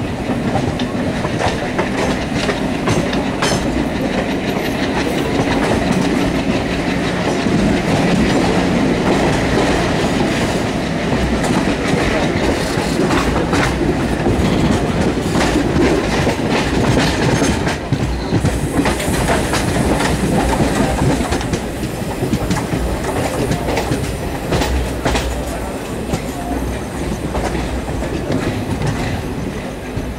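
Passenger train running at speed, heard from aboard: a steady rumble and rush of air, with the wheels clicking over rail joints again and again.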